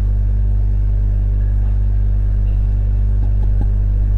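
Steady low hum with a faint hiss above it, holding the same level throughout.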